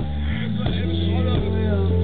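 Live band playing amplified through a PA: a male lead singer over keyboards, bass and drums, with a drum hit about every two-thirds of a second.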